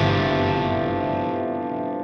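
Metal song recording: a distorted electric guitar chord ringing out through effects and slowly fading, with no drums.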